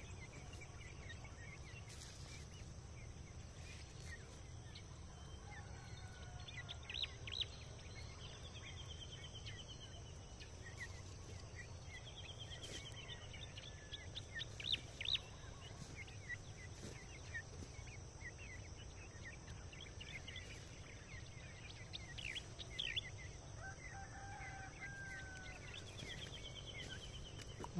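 Faint calls of farm fowl and small birds: scattered short high chirps and a few quick trills, with a longer two-tone call near the end. Beneath them are a steady high hiss and a low rumble.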